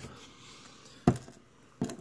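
Two short, sharp taps a little under a second apart, from a circuit board and a small electronic component being handled on a tabletop.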